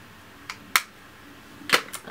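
Sharp clicks of plastic makeup compacts being handled, with a faint click, then a loud one, then a quick loud pair near the end, as one blush is put away and the next is picked up and opened.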